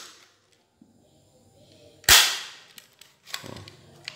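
Spring-powered Glock 26 water-gel pistol converted to 6 mm BB fires once with a single sharp crack about halfway through. Faint clicks of the pistol being handled come before and after.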